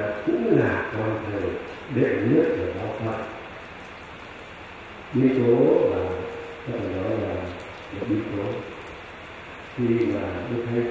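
A man's voice over a microphone and loudspeakers, speaking in short phrases with pauses of about a second, a steady low hiss filling the gaps.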